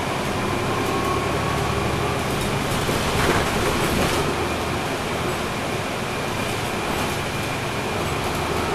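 Cabin noise inside a NABI 416.15 transit bus under way, heard from near the rear: its Cummins ISL9 diesel engine running steadily with road and tyre noise, and a brief louder rush about three seconds in.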